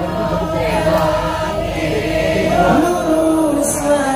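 Male voices singing a duet through microphones over musical accompaniment, the melody held and bent in long ornamented lines.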